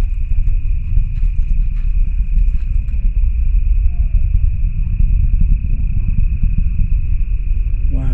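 A loud, steady low rumble, with a continuous high-pitched cricket chirring over it and faint voices in the background.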